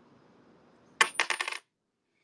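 A tossed coin landing on a hard surface about a second in, with a quick run of five or six metallic clicks and a thin high ring over half a second, then the sound cuts off.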